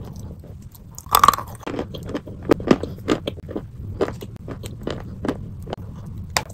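Chalk being bitten and chewed close to the microphone: a loud crunching bite about a second in, then a run of crisp, irregular crunches as it is chewed.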